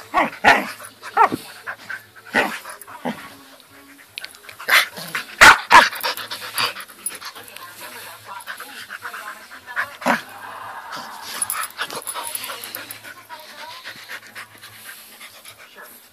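Samoyed puppy making short, pitch-bending whines and yips and panting. Two loud knocks about five and a half seconds in as it bumps against the phone.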